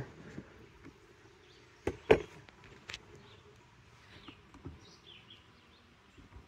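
Faint steady hum of honeybees from an open nuc box, with a couple of sharp clicks about two seconds in as a hive tool pries at the wooden frames.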